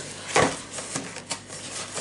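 Handling noise from objects moved by hand on a hard surface: one sharp knock about half a second in, then a few light clicks.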